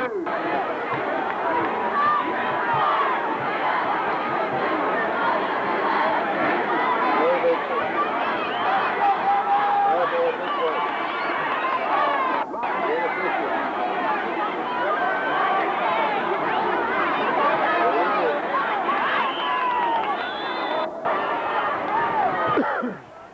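Football stadium crowd: many voices talking and calling out at once in a steady din. It cuts out for an instant twice.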